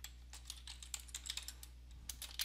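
Computer keyboard typing: a quick run of faint, irregular key clicks as a word is typed.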